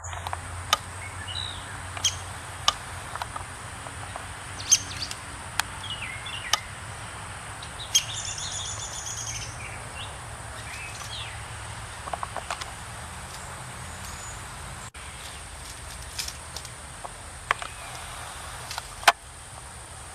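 Woodpecker field recording played back over a video call: short, sharp single call notes at irregular intervals over steady outdoor background noise, with a downy woodpecker calling in the background and other birds chirping, including a brief song phrase about eight seconds in.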